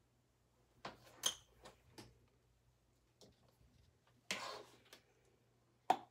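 Plastic paint bottles and cups being handled and set down on a table: a few light knocks and clicks, and a short scraping rustle about four seconds in.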